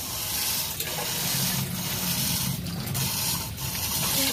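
Water pouring from a hose into a plastic barrel of brine, splashing steadily onto the surface: the filter's water being drained back to the brine tank during NaCl regeneration of the softener resin.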